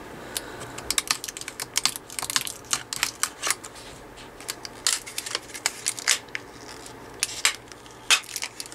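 Small hard-plastic cases for laptop memory sticks being handled, their seals cut and their lids pried open: irregular sharp plastic clicks, taps and snaps, coming in quick clusters.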